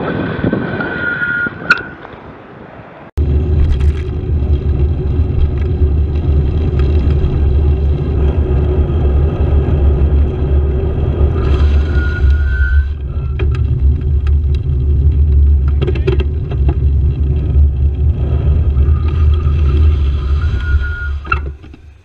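Loud, steady low rumble of wind buffeting a bicycle-mounted camera's microphone, with road and traffic noise, as the bike is ridden along a road. The rumble starts abruptly about three seconds in and falls away just before the end.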